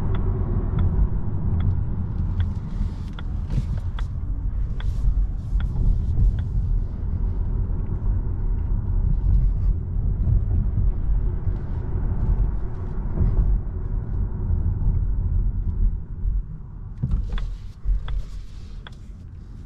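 Tyre and road rumble inside the cabin of a Volvo EX30 electric car as it drives through town and slows down, with no engine note. A regular light tick, a little over once a second, runs through the first six seconds and comes back near the end.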